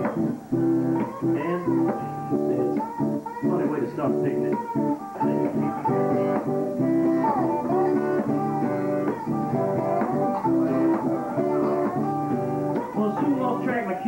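Instrumental break of a talking-blues tune played live on two guitars: an acoustic guitar strumming the rhythm while a second guitar picks a melody over it.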